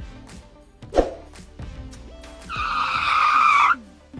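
Background music with a steady beat, a thump about a second in, then a loud screech lasting just over a second that cuts off suddenly, like a tyre-squeal sound effect.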